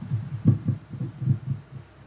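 A man's low, muffled mumbling: a run of about seven short syllables with no clear words.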